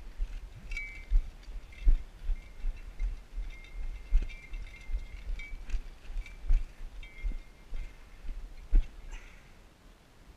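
Footsteps of a player moving quickly over grass, each step a dull thud on the body-worn microphone, about two or three a second. Light metallic jingling of loose gear comes and goes with the steps.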